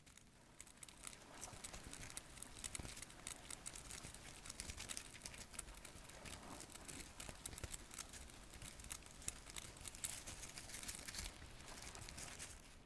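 Faint, dense crackling and ticking as black ants bite and tear at the body of a newly emerged dragonfly.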